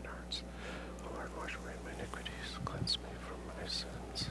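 A man's low, whispered prayer, mostly hissing s-sounds with the words indistinct, over a steady low hum.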